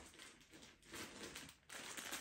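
Faint crinkling and rustling of plastic clip-lock bags of rolled clothes being handled and lifted out of a suitcase.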